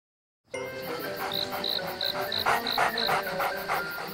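Crickets chirping in a steady rhythm of about three chirps a second, starting about half a second in over soft background music.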